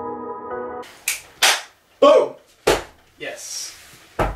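Background music cuts out about a second in. Then come half a dozen sharp knocks and clatters of camera gear being handled and packed into a storage box on a wooden floor, the loudest four in the first two seconds after the music stops.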